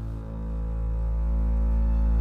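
Tense background score: a low, sustained drone of bowed strings, slowly growing louder.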